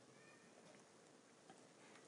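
Near silence: room tone with a faint hiss, and a faint short high tone just after the start.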